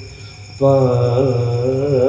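A man singing a ghazal in Urdu, starting about half a second in after a short breath-pause and holding one long note with a wavering, ornamented pitch.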